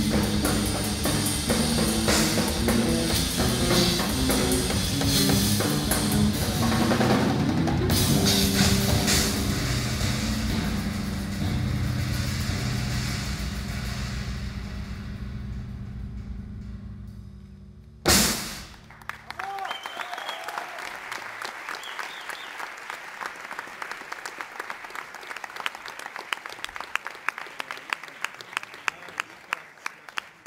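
Tama drum kit with Meinl cymbals and a bass playing live: dense drumming over sustained low bass notes, which winds down into a fading cymbal wash. One final loud hit comes about eighteen seconds in. It is followed by a quieter run of sharp, evenly spaced taps.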